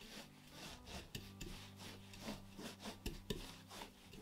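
Ridged rolling pin rolling back and forth over bread dough on a floured marble pastry board: faint rubbing strokes, about two to three a second.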